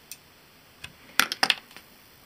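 A steady crackling electrical noise cuts off as the mains power trips out, leaving a low hiss. A few sharp clicks follow, with a quick loud cluster of them about a second in.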